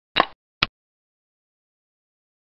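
Xiangqi program's move sound effect: two short clacks like a wooden piece, about half a second apart, the first slightly longer, marking a cannon capturing a pawn on the on-screen board.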